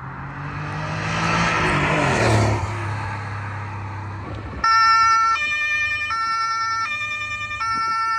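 A car drives past with its engine running, its pitch dropping as it goes by. About halfway through, a two-tone police siren starts, switching between a high and a low note about every two-thirds of a second.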